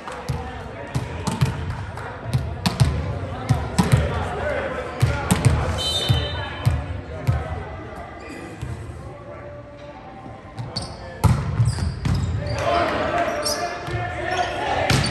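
A volleyball bouncing on a hardwood gym floor: a string of sharp thuds that ring in the large hall, under the chatter and calls of players and spectators. The voices grow louder near the end.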